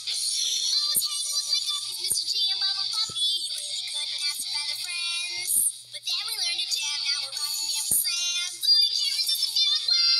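A song playing: high-pitched singing over a music backing, performed without a break.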